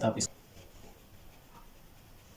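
Faint strokes of a black marker drawing on paper.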